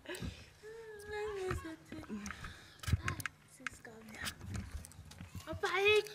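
Children's voices: one drawn-out call about a second in, then scattered voice sounds and a child starting to speak near the end, with a few sharp knocks in between.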